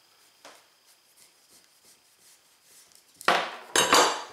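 A chef's knife working slowly through the hard skin of an acorn squash, almost silent but for a faint click, then near the end the blade comes through and knocks against the wooden cutting board, followed a moment later by a second sharp knock as the knife is set down on the board.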